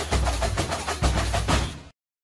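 Percussion-driven intro music: a fast run of drum strokes over a deep bass drum, cutting off suddenly just before the end.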